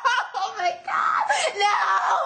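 A woman's loud, high-pitched vocal outburst, wavering and breaking in pitch.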